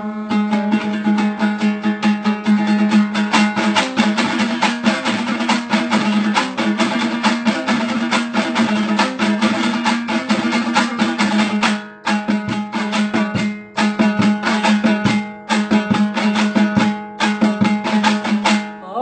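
Hazaragi dambura, the two-string long-necked Afghan lute, strummed fast in an instrumental passage, rapid strokes over a steady low drone. The strumming breaks off briefly a few times in the second half.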